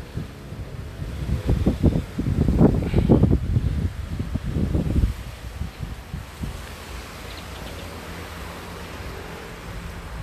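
Wind buffeting the phone's microphone: loud, gusty rumbling for about the first five seconds, then settling to a steadier, quieter rush.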